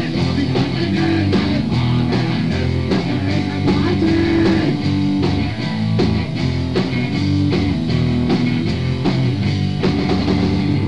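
Punk band playing: electric guitar chords over a drum kit, in a raw rehearsal recording.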